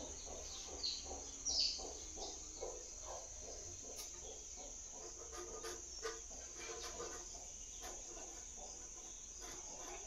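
Faint outdoor ambience: a steady high-pitched insect drone, with two short falling bird chirps in the first two seconds.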